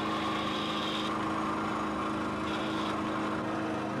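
A steady machine hum with an even hiss over it, unchanging in pitch; a higher hiss comes in for about the first second and again briefly near three seconds in.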